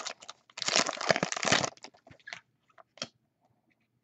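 Foil trading-card pack wrapper crinkling as it is torn open and handled: a dense crackle lasting about a second, then a few light ticks as the cards are handled.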